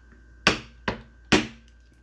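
Three sharp hand strikes, like claps or smacks, evenly spaced about half a second apart.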